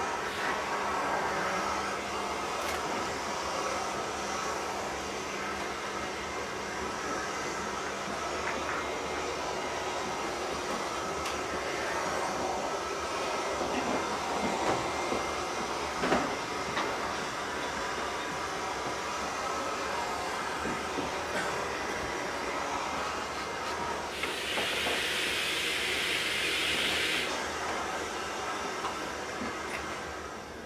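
Steady ambient noise of a billiard hall between shots, with a couple of faint knocks about halfway through.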